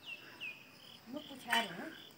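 Insect chirping: a string of short, high chirps, about three each second. A faint spoken syllable comes near the end.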